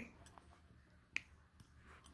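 Near silence broken by a single short, sharp click a little after a second in: a die-cast toy car being handled.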